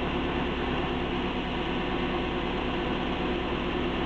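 The 1988 Dodge's electric radiator fan running, a steady hum with a few held tones, heard from inside the car's cabin. The engine computer (SMEC) has switched it on to bring the engine temperature down.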